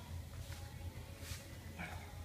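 Steady low room hum, with faint rustles as a person kneels down onto an exercise mat.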